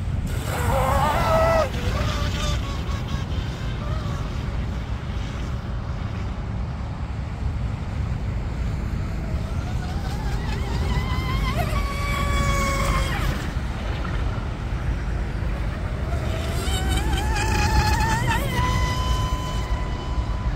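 Electric outboard motor of an RC tunnel-hull racing boat, battery-powered and swinging an aluminium prop, whining at speed on the water. The whine rises and falls in pitch several times as the throttle changes, over a constant low rumble.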